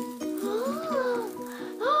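Background music with a steady, stepping melody, over which a child's helium-raised voice draws out a high 'oh' that rises and falls, starting about half a second in; a second short 'oh' comes near the end.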